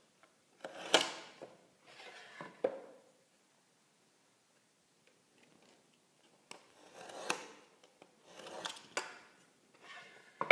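Utility knife scoring the gypsum backing of a drywall patch along a metal square: several short rasping strokes in two groups, with a pause of a few seconds between them.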